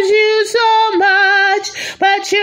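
A woman singing unaccompanied, holding long, sustained notes with a slight vibrato and a short dip in pitch about halfway through.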